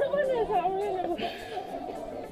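Background chatter of people's voices, with a short hiss a little past one second in.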